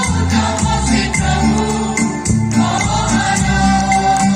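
A mixed choir of men and women singing a gospel hymn together, with amplified instrumental accompaniment.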